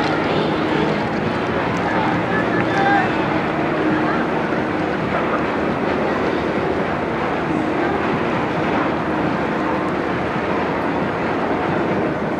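Wind rumbling across the microphone, mixed with voices and amplified yosakoi dance music from loudspeakers, as a steady dense wash of sound.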